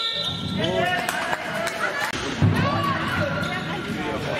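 Handball players' shoes squeaking in short chirps on the sports-hall floor, with the knocks of the ball bouncing and voices on and around the court.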